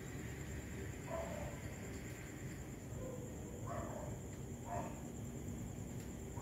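A few short, faint animal calls, the first about a second in and two more close together later, over steady low background noise.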